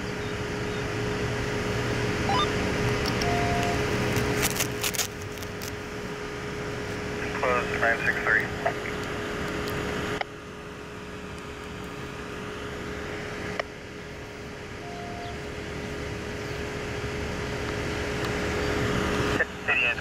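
Outdoor background noise with a steady low hum under it. Brief indistinct voices come in about eight seconds in, and the background changes abruptly several times.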